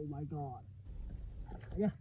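A man's short wordless exclamations: one brief 'ooh'-like call at the start and another near the end, over a steady low rumble.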